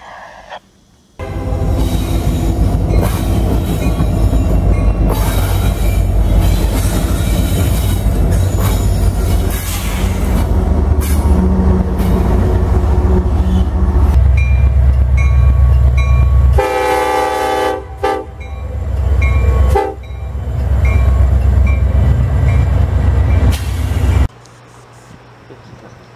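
Freight trains passing close by in a run of short clips that cut in and out abruptly: heavy diesel locomotive rumble and wheels on rail, with air horns sounding, the clearest a loud multi-note horn chord about two-thirds of the way through.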